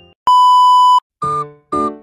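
A loud, steady, high-pitched electronic beep lasting under a second. After a brief silence, two short synth notes follow, each dying away quickly.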